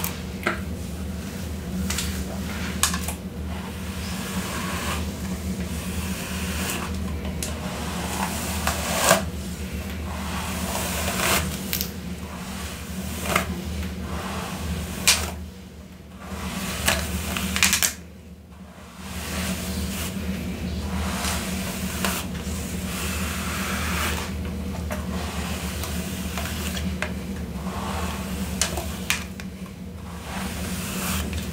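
A hairbrush drawn again and again through long hair close to the microphone: a run of brush strokes, each a brief bristly swish, over a steady low hum.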